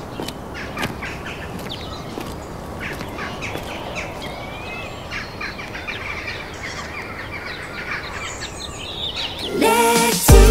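Outdoor ambience with birds chirping in short repeated calls over a steady background hiss, with a few light clicks. Music comes in just before the end.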